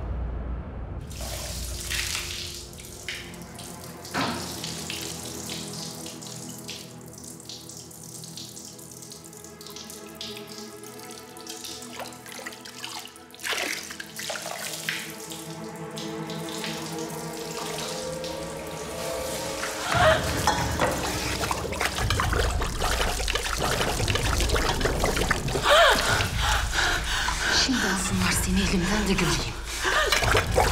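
Water poured over long hair, streaming and splashing into a basin, under a soft sustained background music score; the splashing grows louder and fuller about two-thirds of the way through.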